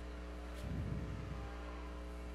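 Steady low electrical hum under a quiet pause, with a faint, muffled low sound for about a second near the middle.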